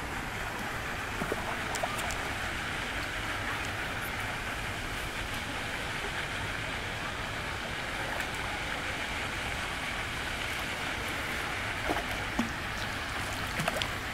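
Steady rushing outdoor noise of wind in the waterside trees and over the microphone, with a few short splashes near the end as a hooked carp thrashes at the surface by the landing net.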